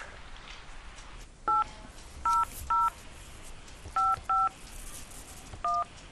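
Telephone keypad touch tones: six short two-tone beeps as an ID number is keyed into an automated phone menu. The first comes about a second and a half in and is followed by two quick ones, then two more close together, and the last comes near the end.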